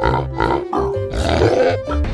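Edited-in music with a pulsing bass beat, overlaid with a cartoon pig's grunting sound effect in the second half.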